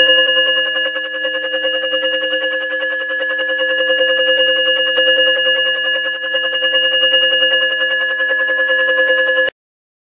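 Electronic gong bell ringing through its speaker on its first sound option, a digitally generated ring rather than a hammer on a gong: several steady pitches held together with a rapid flutter. It cuts off suddenly about nine and a half seconds in.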